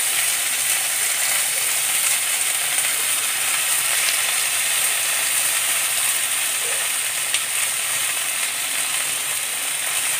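Chopped mixed vegetables sizzling steadily as they fry in oil in a wok, with a few faint crackles.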